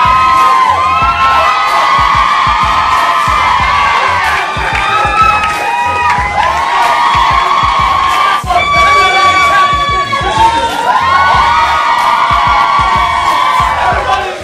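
A crowd of young women screaming and cheering loudly and without a break, many high voices overlapping, with music thumping underneath.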